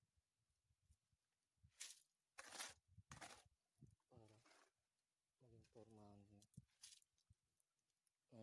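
Near silence with faint, brief speech from a person's voice around the middle, and a few short scratchy noises before it.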